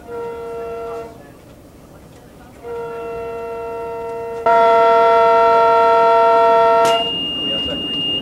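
Train horn sounding from on board the moving train: a short blast of about a second, then a long blast of about four seconds that gets louder partway through. A steady high-pitched beep follows near the end.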